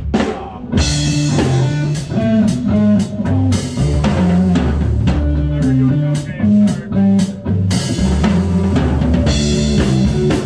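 Live rock trio of drum kit, electric bass and electric guitar. After a single drum hit, the band comes in together a little under a second in, then plays a driving groove with a walking bass line under steady drum strokes.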